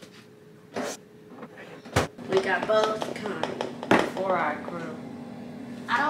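Kitchen clatter: three sharp knocks of cookware, about a second in, at two seconds and at four seconds, with voices talking in between.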